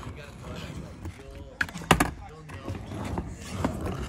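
A skateboard on a plywood skatepark deck, giving one sharp clack just before two seconds in, with a lighter click just before it and a softer knock near the end, over faint voices.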